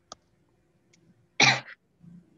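A single short cough about one and a half seconds in, with a faint click just before it near the start.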